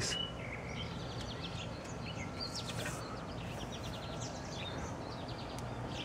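Outdoor garden ambience: small birds chirping and trilling on and off, faint and high, over a steady low background noise.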